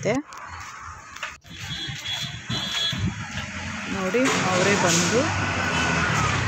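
Indistinct voices of several people talking over a steady outdoor background noise, with a brief break in the sound near the start and voices growing clearer from about the middle on.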